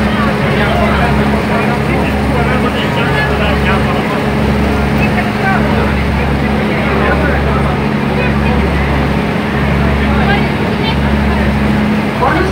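Steady low drone of a passenger boat's engine heard from inside the cabin, with a constant rushing noise over it.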